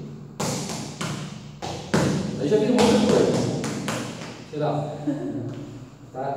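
Samba no pé footwork: shoes stepping and stamping on a wooden parquet floor, giving several sharp thuds in uneven quick succession that ring in the room.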